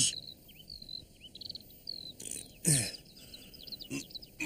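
Small birds chirping and twittering with short, high, whistled notes. About two and a half seconds in comes a brief rustle, then a short falling vocal sound.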